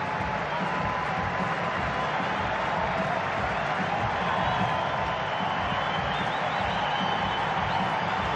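Large stadium crowd applauding and cheering steadily, a standing ovation for a departing batsman.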